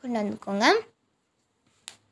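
A voice speaks for under a second, then it goes quiet, and a single sharp click sounds near the end.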